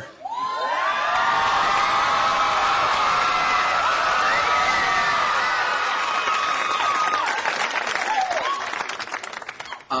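Studio audience applauding and cheering with whoops, greeting a guest star's entrance; the applause starts right away and fades out near the end.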